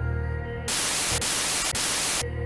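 Ambient background music cut off about a third of the way in by a burst of television static, a loud even hiss with a couple of momentary dropouts.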